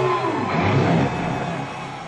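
Live concert sound between an announcement and a song: a wash of crowd noise with faint stage tones, fading steadily down.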